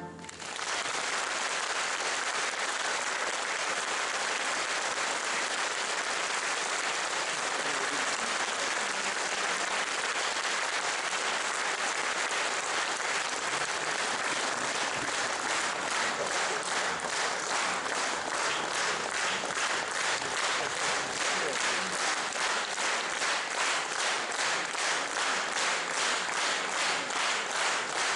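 Concert audience applauding as the song ends. About halfway through, the clapping settles into a steady rhythm, everyone clapping together at roughly two to three claps a second.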